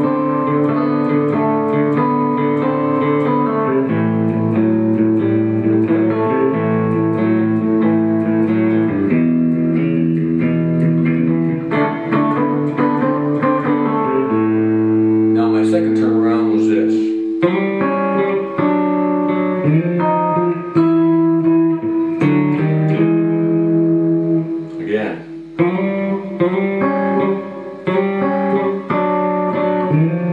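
Fender Stratocaster electric guitar played fingerstyle in a blues shuffle: the thumb carries a bass line while the fingers alternate bass rhythm and a lead line. The bass line is emphasised and an A note is kept ringing under it.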